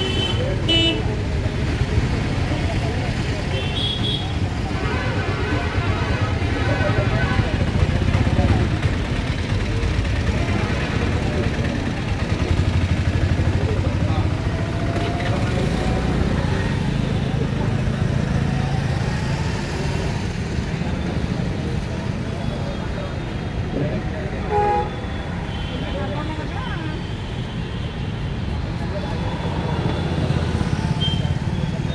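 Street traffic running steadily, with vehicle horns sounding now and then, most clearly a few seconds in and again near the end, and background chatter of passers-by.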